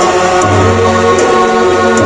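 Bhaderwahi folk dance music: group singing over instruments, with a regular beat.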